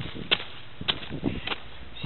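Boot footsteps on a road crusted with sleet and ice: three short, sharp steps a little over half a second apart.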